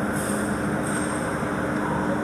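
Loud steady machine-like rumble with a constant low hum underneath, and a few brief faint hissy crackles near the start.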